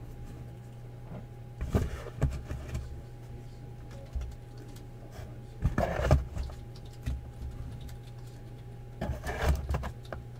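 Trading cards being packed up by hand into a box: three short bursts of handling noise, rustling with light knocks, about two seconds in, about six seconds in and just past nine seconds, over a steady low hum.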